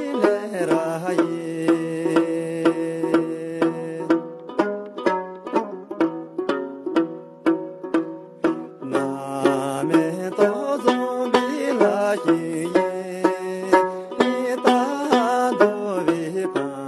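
Tibetan dranyen lute strummed in a steady rhythm of about three strokes a second, with a man's voice singing long held notes over it. The voice drops out for a few seconds in the middle, leaving the lute alone, then comes back.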